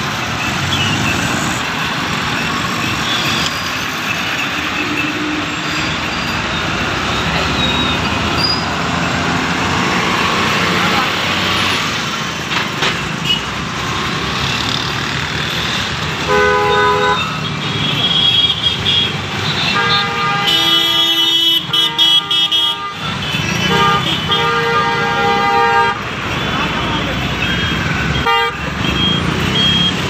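Busy road traffic, with engines running and voices mixed in. Vehicle horns honk three times: a short honk about halfway through, a longer one a few seconds later, and another shortly after that.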